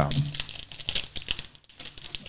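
Packaging rustling, with many small irregular clicks and taps as a mini laptop and its box are handled.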